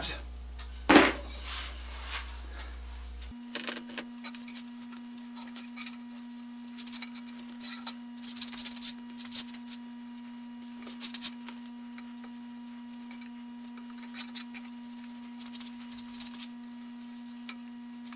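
Small scattered clinks and taps of an applicator against a glass jar and a wooden sledgehammer handle as boiled linseed oil is brushed on, over a steady hum.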